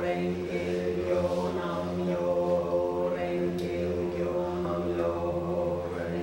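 A woman's voice chanting in long sustained notes over a steady low drone that holds throughout.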